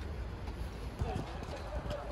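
Footsteps on a paved path, with faint voices in the background.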